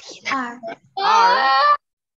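A child's voice: a few quick syllables, then about a second in a drawn-out, sing-song call that cuts off abruptly.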